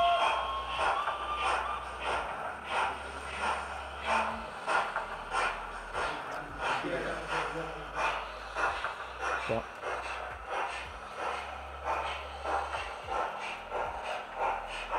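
Sound decoders of two HM7000-fitted model steam locomotives, an LNER A2 and a Battle of Britain class, running together in a consist. Their whistles are held briefly at the start, then regular steam exhaust chuffs follow, about three every two seconds.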